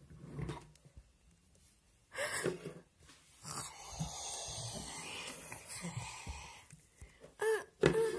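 A person's voice making non-word sound effects: a short breathy cry about two seconds in, then a long hoarse hiss lasting about three seconds, and a short voiced cry near the end.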